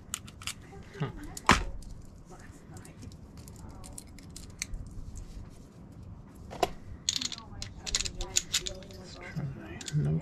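Small metal clicks and rattles of a motorcycle lock cylinder and its keys being handled and worked, with one sharp click about a second and a half in and a quick run of clicks near the end.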